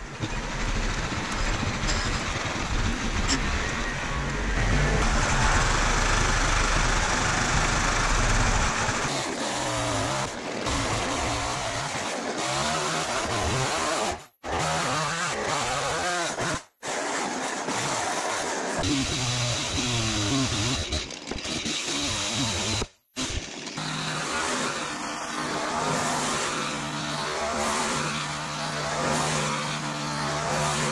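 Poulan Micro XXV two-stroke chainsaw running and cutting into the end grain of a wooden stump, its pitch changing as it bites and eases off. The sound breaks off sharply three times.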